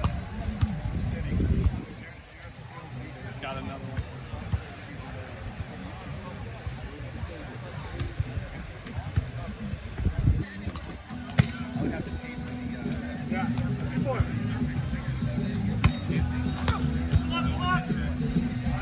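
Volleyball being hit by hand: a sharp smack about ten seconds in as the ball is served, then a few more hits during the rally, over a steady low rumble.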